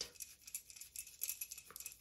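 Faint, scattered clicks and light rattling of small metal parts being handled: a screw being fitted by hand into an alloy bicycle phone mount.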